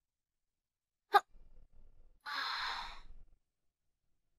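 A short, sharp click or knock about a second in, then a breathy exhale like a sigh lasting under a second.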